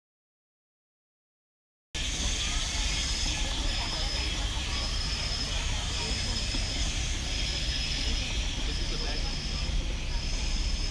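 Silence for about two seconds, then outdoor ambience: a steady low rumble with faint voices of people, and a high, thin buzzing note that repeats in pulses about every second and a half.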